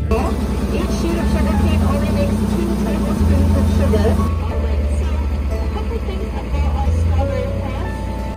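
Soft background music with sustained notes, laid over live outdoor sound of indistinct voices. In the second half a farm tractor's engine runs as it pulls a wooden hayride wagon.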